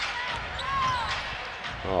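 A basketball being dribbled on a hardwood court during live play, over the background noise of the arena.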